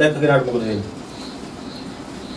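A man's voice trailing off in a drawn-out, low syllable during the first second, then a quiet room with faint high chirps repeating about twice a second.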